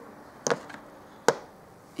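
Two sharp clicks a little under a second apart, the second louder.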